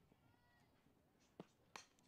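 Near silence, broken about a second and a half in by two faint, short clicks: a softball bat meeting the ball on a foul.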